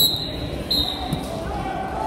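A referee's hand slaps the wrestling mat with a single loud thud, followed by two short high whistle blasts, the signal of a pin (fall). Chatter echoes in a large gym hall underneath.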